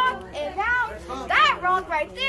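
A young girl talking in a high child's voice, in short phrases.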